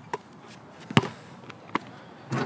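A basketball making three sharp thuds, the loudest about a second in.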